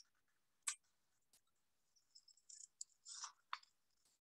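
Faint handling of a small square of paper: soft high rustles and a few light clicks, the loudest near the end as scissors are taken up to cut it.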